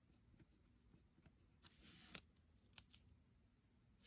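Near silence, with a faint scratch of a felt-tip pen on planner paper about two seconds in and a few light clicks and taps.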